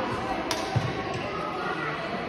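A badminton racket strikes a shuttlecock with one sharp crack about half a second in, followed shortly by a dull thump, over the background din of a sports hall.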